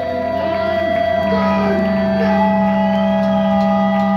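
Electric guitars and bass holding long, steady notes that ring on over one another, with no drums, in a loud live rock band.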